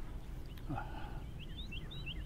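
A songbird singing a quick run of short, high chirps starting about a second and a half in, over a steady low wind rumble on the microphone.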